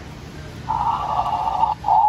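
Tinny electronic dinosaur sound effect from the small speaker of a Jurassic World Dominion Sound Slashin' Therizinosaurus toy, set off by a hand on the figure. It starts under a second in, breaks off for a moment near the end, then carries on.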